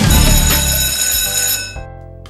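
Sound effect of a quiz countdown timer running out: the drum-backed countdown music ends on a held, bell-like ringing tone that signals time is up, fading away about a second and a half in.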